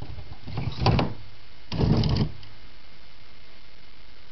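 Carved wooden cabinet door of a 1960s Webcor console stereo being pulled open by hand: two short scraping, rubbing noises with clicks, about a second apart.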